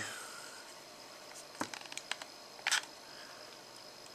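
A few faint clicks from a hot glue gun being triggered to lay a blob of glue: one sharp click about a second and a half in with a few small ticks after it, then another short click shortly before three seconds, over quiet room tone.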